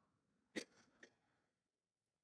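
Near silence: room tone, broken by one brief faint sound about half a second in and a fainter tick about a second in.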